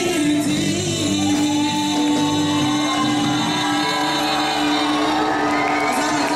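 A woman singing into a microphone over a live band of electric guitars, keyboard and drums, amplified through stage speakers; one long note is held through most of it, with pitch glides near the end.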